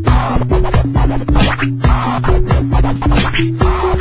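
DJ scratching a vinyl record on a turntable over a steady electronic beat, with a melody of short stepped notes running through it.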